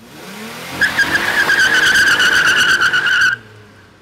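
Car tires screeching over a running engine. A rising engine note comes first, then a loud steady squeal from about a second in, which cuts off suddenly just past three seconds and leaves a short fading tail.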